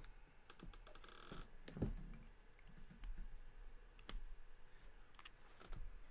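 Faint scratching and ticking of an ink pen nib on drawing paper in short inking strokes, with a brief scratchy stroke about a second in and a soft thump of the hand or pen on the paper near two seconds.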